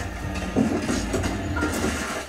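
Loud, continuous rumbling and clattering from a TV drama's soundtrack being played back.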